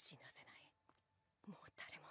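Near silence, with a few faint breathy sounds.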